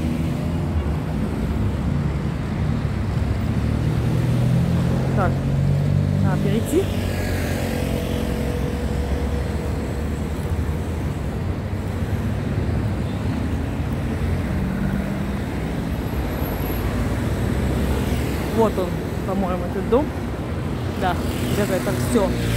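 Steady rumble of city road traffic, cars and motorbikes running along a busy multi-lane road.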